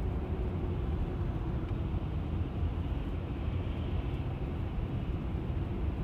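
Steady, low road and tyre rumble heard inside the cabin of a Tesla electric car rolling at about 25 mph in slow highway traffic.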